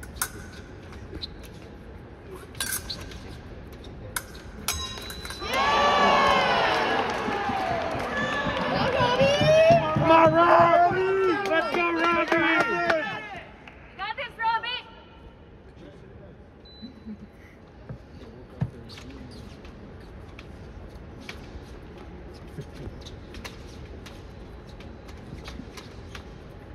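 Scattered light clicks of epee blades and footwork, then about five seconds in a burst of loud shouting and cheering voices that lasts about seven seconds as a touch is scored, with a brief second shout just after. Light clicks go on at a lower level for the rest of the time.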